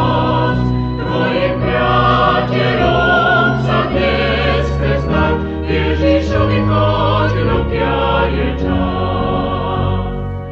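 Vocal group singing a Christian song in several voices at once over steady low notes, a live recording played back from cassette tape.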